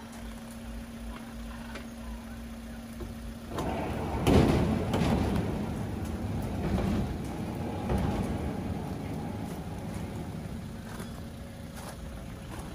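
A large wood-and-metal sliding gate being opened. After a steady low hum, it starts moving about three and a half seconds in with a loud rattle, then rolls along its track with a continuous rumble that slowly fades.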